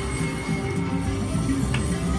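Wolf Run Gold slot machine playing its game music during a respin feature, with held low notes and a steady high tone.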